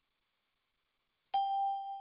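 Electronic notification chime from a video-call app: a single clear ding about a second and a half in, fading away over the next second.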